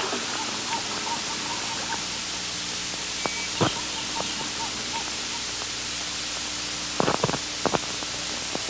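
Steady hiss from an old videotaped TV broadcast. A row of faint short chirps runs through the first few seconds, with a few faint clicks later on.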